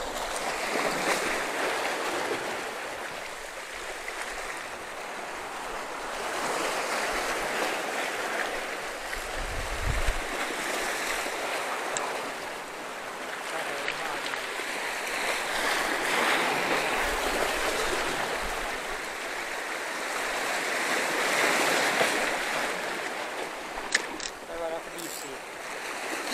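Surf breaking and washing over shoreline rocks, a steady rush of water that swells and fades every few seconds. A couple of sharp clicks come near the end.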